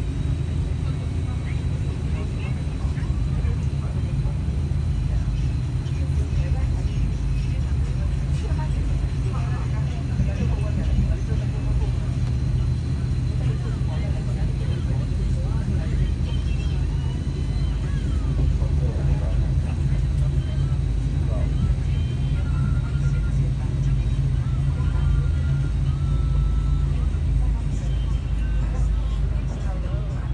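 Steady low rumble of a KTMB Shuttle Tebrau passenger train running, heard from inside the carriage, with a few short thin high tones in the second half.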